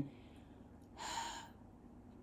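A person drawing one short breath about halfway through, against faint room tone.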